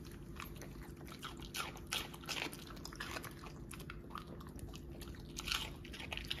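A large dog biting and crunching chunks of raw green vegetable, in irregular crisp, wet crunches several times a second.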